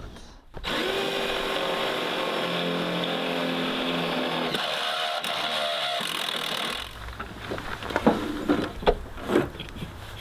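Cordless drill running for about six seconds, boring a small hole in the Predator 3500 generator's housing. Its pitch shifts about two-thirds of the way through, then it stops, followed by a few light knocks and clicks.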